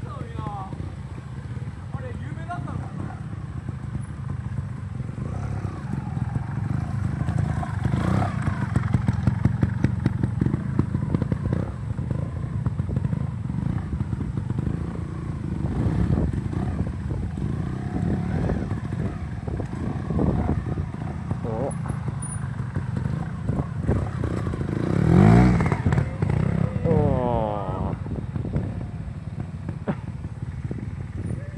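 Trials motorcycle engines running at low speed with throttle blips as the bikes turn and climb on dirt, and one loud rev rising and falling a little before the end.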